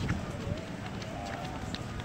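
Outdoor street ambience on a busy pedestrian promenade: indistinct voices of passers-by and footsteps on the paving.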